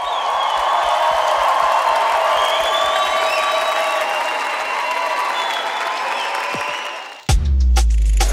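Audience applauding and cheering for about seven seconds. Near the end, a short electronic jingle with heavy bass starts abruptly.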